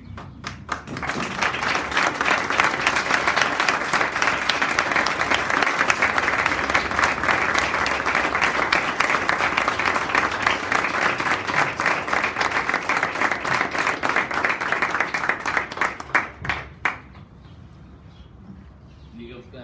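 Audience applauding: scattered claps at first that build within about a second into steady applause, then thin out to a few last claps and stop shortly before the end.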